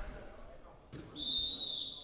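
A long, steady whistle blast that starts about a second in and is held on. It is the signal stopping play for a team timeout.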